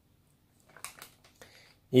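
A few faint soft rustles and clicks as a cat noses into a paper-wrapped bouquet of dried fruit and sweets, then a man starts speaking just before the end.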